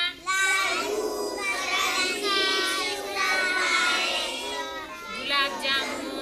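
A group of children singing together in unison, with long held, gliding notes.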